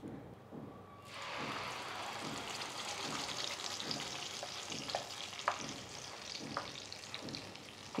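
Blended green masala paste of onion, coriander, green chillies and yogurt hitting hot oil in a kadhai and sizzling hard from about a second in. The sizzle eases slightly near the end.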